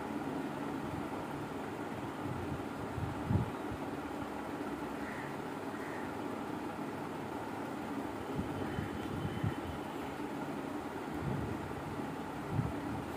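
Steady low background hum, with a few soft knocks about three seconds in and again near nine seconds.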